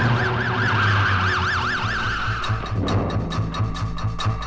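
Police car siren yelping, its pitch rising and falling about four times a second over a low drone. The siren stops about two and a half seconds in, and a fast ticking music beat takes over.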